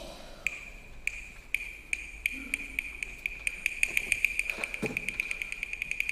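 Chinese opera percussion: a high-pitched woodblock struck about twice a second, speeding up steadily into a rapid roll, a percussion lead-in before the next line.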